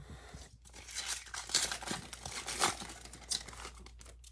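A Panini Prestige football card pack being torn open by hand, the wrapper crinkling and ripping in a string of short, irregular tears.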